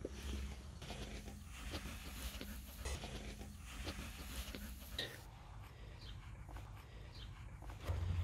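Faint rustling and handling noises, with small animal sounds, as newborn puppies are lifted out of blanket bedding beside their mother dog.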